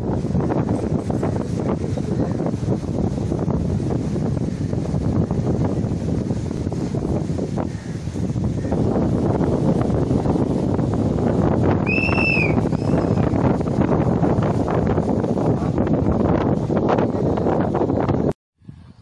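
Low-pitched wind noise buffeting the microphone, starting and stopping abruptly. About twelve seconds in comes a short, high call that rises and falls, with a fainter repeat a second later.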